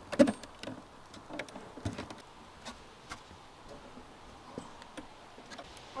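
Metal clicks and light knocks from a size-120 body-grip (Conibear-type) trap being handled and seated in a wooden box. The clicks are several in the first two seconds, then a few scattered ticks.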